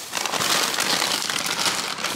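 Thin plastic grocery bag and snack packets crinkling and rustling steadily as hands rummage inside the bag and pull packets out.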